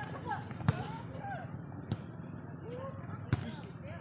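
A volleyball struck by players' hands three times during a rally, sharp slaps about one, two and three seconds in, the last the loudest, over distant voices of players and spectators.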